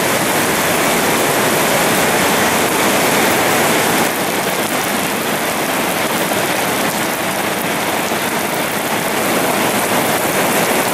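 Heavy rain falling steadily, a loud even hiss that eases slightly about four seconds in.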